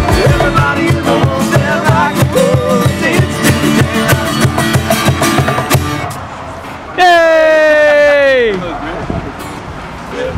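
Two acoustic guitars strummed over a cajon beat, with a voice singing along, until the song stops about six seconds in. About a second later comes one loud, long note that slides down in pitch for about a second and a half.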